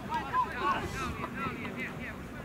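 Distant shouts from players and spectators across an outdoor soccer field, short high calls rising and falling, over wind noise on the microphone.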